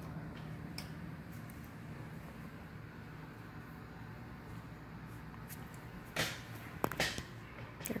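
Quiet hotel-corridor room tone with a steady low hum. There are a couple of brief handling noises about six and seven seconds in.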